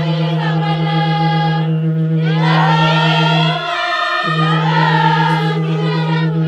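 Several voices singing together over a sustained low drone note. The drone drops out briefly about four seconds in, then resumes.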